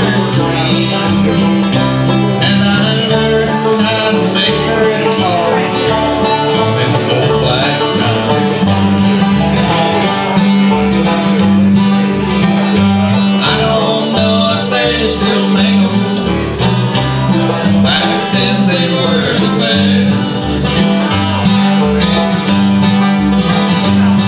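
Acoustic bluegrass band playing an instrumental break: picked acoustic guitar and banjo over an upright bass plucking a steady beat.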